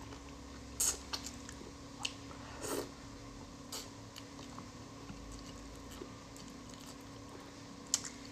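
Close-miked wet mouth sounds of a person chewing soft fish, with scattered sharp smacks and clicks and a short squishy slurp a little before the middle. Near the end comes one louder sharp click.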